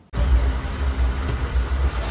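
Steady low rumble of a moving Indian Railways train, heard from inside a crowded sleeper coach; it begins abruptly just after the start.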